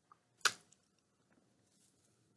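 A single sharp click about half a second in, from hands handling a small plastic doll and a rerooting needle; otherwise only faint handling noise.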